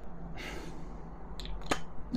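A man sniffing a perfume bottle, a soft inhale through the nose lasting under a second, followed by two small clicks near the end.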